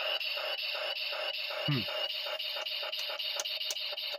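Legacy Dragon Dagger toy's electronic sound module switched on and stuck, its small speaker playing a steady buzzy tone that pulses about six times a second without cutting off. The sound is hung up, which the owner puts down to either a short circuit or weak batteries.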